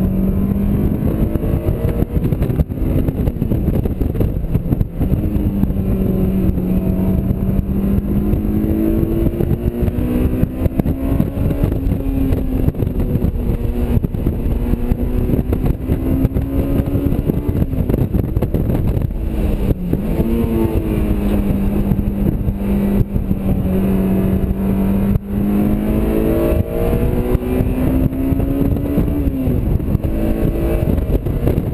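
Honda S2000's 2.0-litre four-cylinder engine heard from inside the cabin under hard track driving. The note holds, climbs slowly and drops sharply at gear changes, about two-thirds of the way in and again near the end, over heavy road and wind noise.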